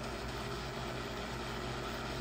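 Smartphone spirit box app sweeping through FM and AM radio frequencies, giving a steady hiss of radio static from the phone's speaker.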